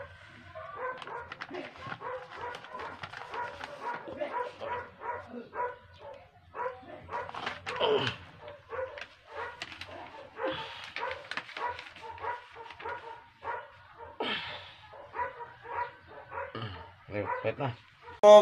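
Indistinct background voices mixed with short whining, yelping cries that fall in pitch, and light clicks throughout.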